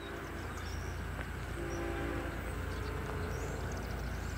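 Distant approaching diesel freight train: a steady low rumble that grows slightly louder, with faint horn tones held for a moment or two around the middle.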